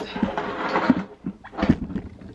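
Handling noise from a camera being picked up and repositioned: rustling for about the first second, then a couple of short bumps.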